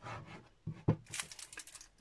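Card and patterned paper pieces being moved about on a craft cutting mat: a short knock just under a second in, then about a second of crinkly paper rustling.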